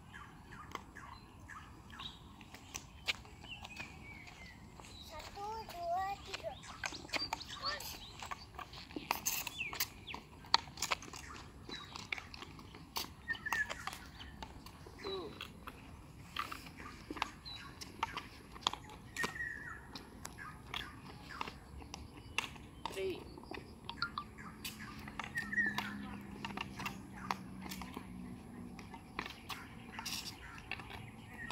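Irregular sharp taps and clicks, with short chirps and faint voices in the background.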